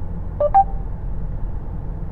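Short two-note electronic chime from the Mercedes MBUX infotainment system, a lower note then a higher one about half a second in, between the voice command and the assistant's reply. Under it runs a steady low rumble of road noise inside the moving car's cabin.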